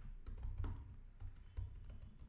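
Computer keyboard typing: a quick run of faint keystrokes as a line of code is typed.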